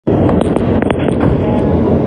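New York City subway train moving past a station platform, heard from inside the car: a loud, steady rumble of wheels on rail, with sharp clicks and short high squeaks in the first second or so.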